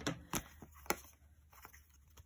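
Folded paper card stock being handled, giving a few faint clicks and rustles.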